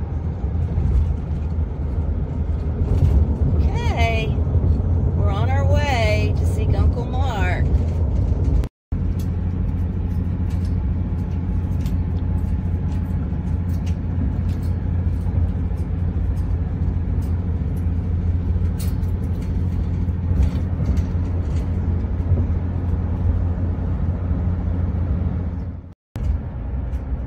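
Steady low road and engine rumble inside a moving car's cabin, briefly cut off near nine seconds. A few seconds in, a voice makes sliding, warbling pitched sounds, and faint light clicks come through later.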